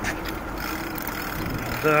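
Steady hum of road traffic with a faint engine tone in the middle, and a man saying a single word right at the end.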